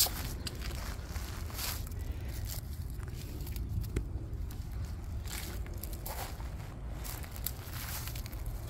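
Footsteps crunching slowly over dry mulch and dead leaves, faint crunches about once a second over a steady low rumble.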